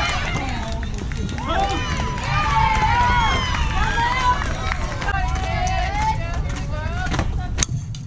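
Girls' voices shouting and cheering from the field and dugout, with a steady low rumble of wind on the microphone. Near the end comes a single sharp crack of a bat hitting a softball.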